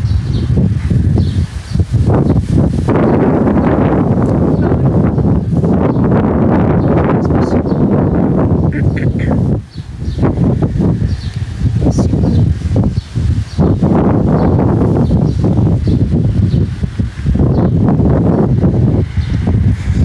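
Wind buffeting a phone's microphone: a loud, low rumbling gust noise that dips briefly about halfway through.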